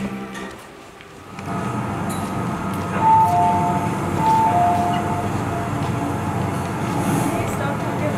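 Metro train sound effect: a subway train running with a steady rumble, with a two-note descending chime sounding twice a few seconds in.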